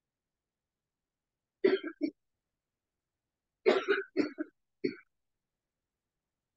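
A person coughing and clearing their throat: two short coughs about one and a half seconds in, then a run of three more near the end.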